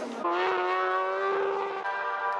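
Racing motorcycle engine at high revs, its pitch rising slightly and then holding steady for more than a second.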